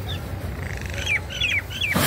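A bird calling: a quick run of about five short squawks, each sliding downward in pitch, in the second half. The calls sound over a steady low outdoor rumble, and a brief rush of noise comes right at the end.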